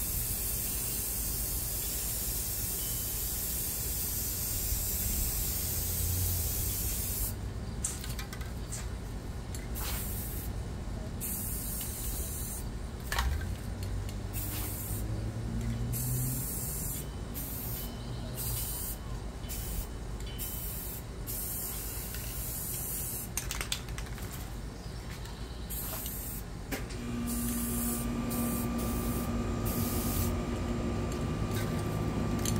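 Two aerosol spray-paint cans hissing as they spray paint onto a tub of water for hydro-dipping. The spray runs steadily at first, then comes in short bursts with brief gaps, and runs steadily again near the end.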